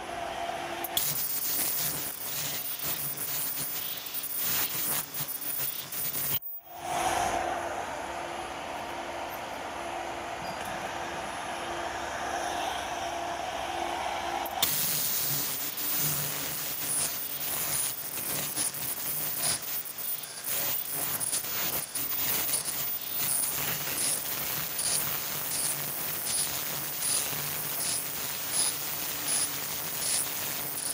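Fully automatic KF94 fish-shaped mask-making machine running in production, its servo-driven mechanisms clicking and clattering in a fast, even rhythm. A steady hum runs under it for part of the time.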